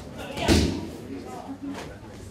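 A single loud bang about half a second in, ringing briefly in the room, with low voices murmuring in the background.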